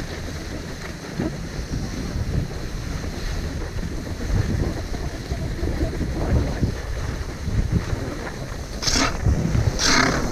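Wind buffeting the GoPro's microphone as skis slide over groomed snow, a low rumbling hiss, with two louder, sharper scrapes of the skis on the snow near the end.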